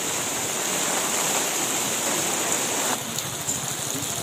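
Heavy rain falling on a wet street, a steady hiss; about three seconds in the sound changes abruptly and drops a little.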